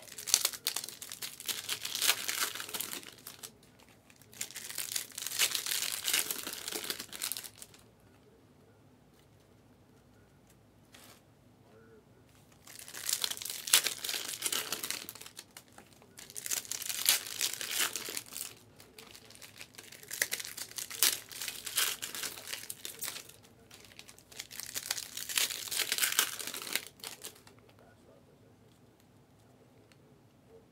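Trading-card pack wrappers from a case of 2023-24 Panini Select Hobby being torn open and crinkled by hand, in six bursts of two to three seconds each, with a longer pause about a third of the way through.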